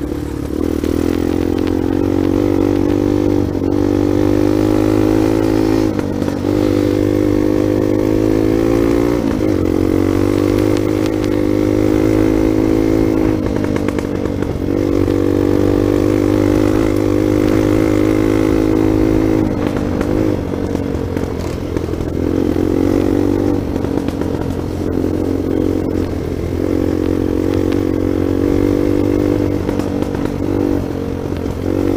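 Trail motorcycle engine running steadily under way on a dirt road. Its note briefly drops and picks up again several times.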